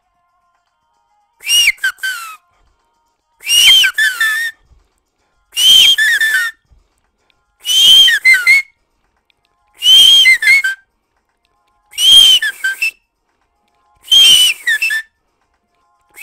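A high whistle-like sample in the mix, played seven times about every two seconds. Each play is a second-long figure that rises and falls in pitch, with dead silence between.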